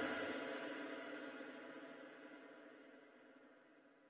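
The closing chord of an electronic bass-music track ringing out, with several steady tones fading away to nothing over about two and a half seconds.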